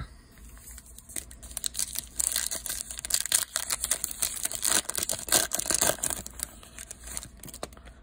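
A foil trading-card pack being torn open and crinkled by hand: a dense run of crackling, rustling noise that starts about a second and a half in and dies away near the end.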